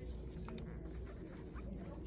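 Faint rubbing of a ChloraPrep foam swab scrubbed with friction over a catheter site, over a steady low room hum.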